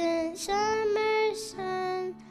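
A group of young girls singing together in unison into handheld microphones, holding each note, with a low steady accompaniment underneath. The melody steps up about half a second in and drops back near the end.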